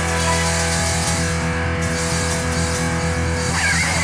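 Live rock band with electric guitar, bass and keyboard holding a sustained closing chord that rings on steadily. A high wavering note comes in near the end.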